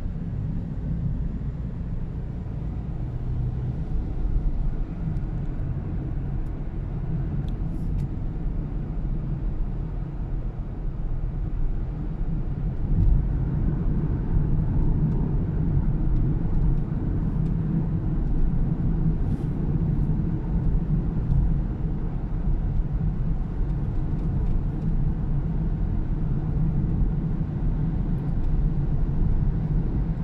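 Car road noise heard from inside the cabin while driving: a steady low rumble of tyres and engine. It grows a little louder about halfway through.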